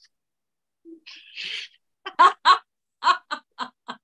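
A person laughing in a run of short, quick bursts, about two seconds in, after a brief breathy hiss.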